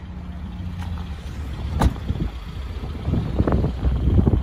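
A car door latch clicks once, about two seconds in. It is followed by low rumbling handling and wind noise on the phone's microphone.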